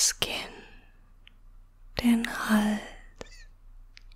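A woman's soft whispered voice: a breathy whisper at the start and a short, softly voiced utterance about two seconds in, with a couple of faint clicks after it.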